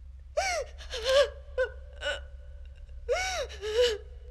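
A woman sobbing: short choked cries and gasping breaths in two bursts, the first under a second in and the second around three seconds in.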